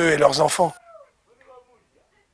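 A man speaking, breaking off under a second in; after that only faint, short pitched sounds in the background.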